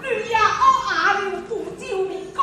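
Speech: a Min opera performer declaiming stylised stage dialogue in a high voice.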